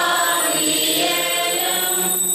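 A group of voices singing a liturgical chant together, in held notes that move from pitch to pitch.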